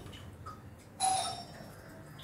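A single metallic clink about a second in, ringing briefly as it fades: stainless steel kitchenware knocking together.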